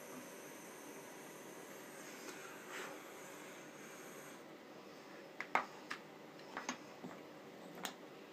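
Faint steady hiss of a small handheld torch flame heating a wire splice as solder is melted along it; the hiss drops away about halfway through as the torch is shut off. This is followed by a few light clicks and knocks as the tools are set down on the table.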